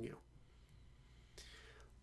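Near silence: room tone after a man's last word, with a short, faint breath in about one and a half seconds in.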